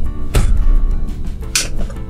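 Background music throughout, with a thump about a third of a second in and a short, sharp scrape about a second and a half in: the toy bead cutting station's plunger pressed down and its blade slicing through a bead stick.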